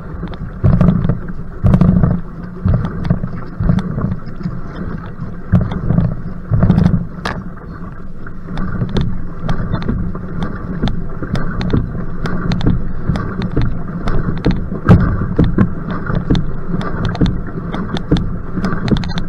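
Paddle strokes splashing and water rushing past an outrigger canoe being paddled hard, with surges about once a second. Wind buffets the microphone in a strong head wind.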